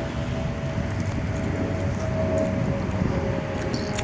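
Steady rushing wind noise on the microphone, with a faint steady hum underneath.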